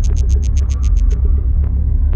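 Minimal deep tech electronic track: a steady, heavy bass pulse under a fast run of high ticks, about eight a second, that stops about a second in.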